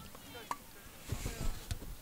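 Faint, distant voices of players and people on the sidelines calling out across an outdoor field, with a few soft clicks.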